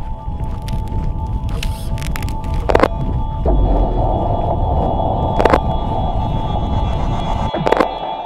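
Music-style sound design for an animated logo outro: a deep, steady rumbling drone with a held tone on top, punctuated by three sharp hits at about three seconds, five and a half seconds and near the end.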